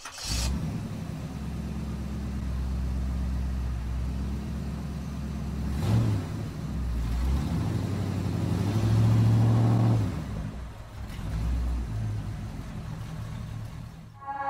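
Car engine running and revving, swelling to its loudest about nine to ten seconds in, then dropping back.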